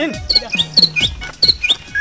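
A run of about six short, high chirps, one every quarter to half second, over background music.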